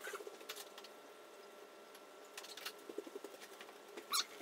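Very quiet room tone with a few soft, scattered clicks and faint low blips.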